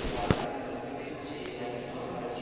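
A single sharp thump about a third of a second in, over faint voices in a large, echoing church hall.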